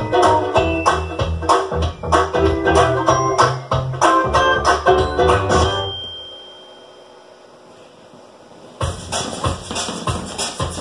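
Instrumental music with a steady beat and a bass line, played through home-made polystyrene flat-panel (distributed-mode) speakers driven by audio exciters. About six seconds in the music dies away, and it starts again near the end.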